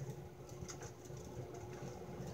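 Faint handling noise from a hand held right at the microphone: low rubbing with a few light clicks and taps.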